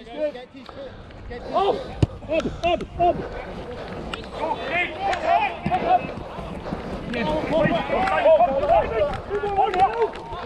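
Rugby players shouting and calling to each other across the pitch in many short calls, busiest in the second half; one sharp knock about two seconds in.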